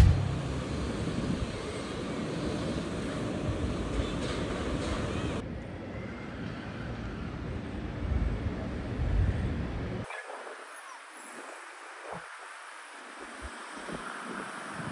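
Outdoor city ambience: wind on the microphone over distant street traffic. The sound changes abruptly twice, about five and ten seconds in, and the low wind rumble drops out for the last few seconds.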